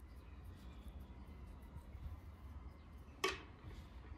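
Faint room tone with a low steady hum. About three seconds in, one brief handling sound as the crocheted yarn piece is laid down flat on the table.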